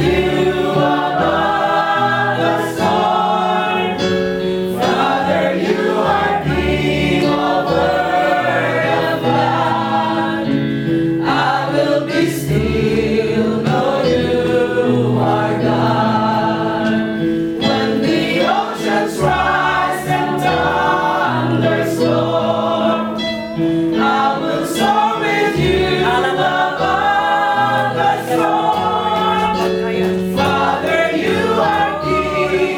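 A small worship group of women and men singing a hymn together, with steady low notes underneath that shift every second or two.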